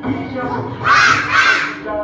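Two loud short shouts in unison from a group of young children, the kind of 'ha' calls given in a kung fu exercise routine, over background music.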